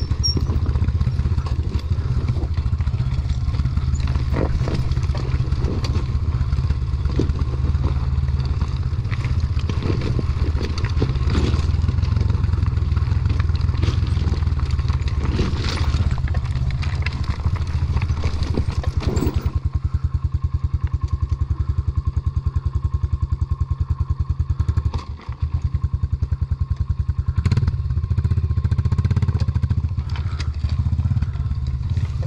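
KTM dirt bike engine running steadily at low speed over a rocky trail, with rocks clattering and knocking under the tyres. The engine note dips briefly for a moment late on.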